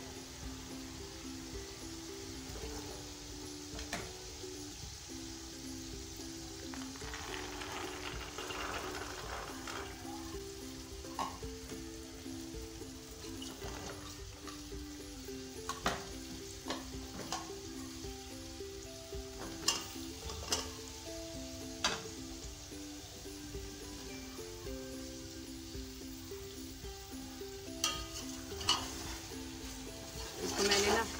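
Vegetables sizzling as they fry in hot oil in an aluminium pot, with a metal slotted spoon clicking against the pot several times in the second half. A soft background music melody plays throughout.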